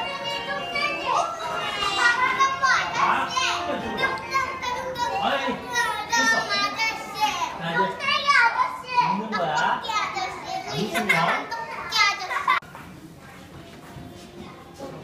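Young children's voices, several talking and calling out at once; the noise drops off suddenly near the end.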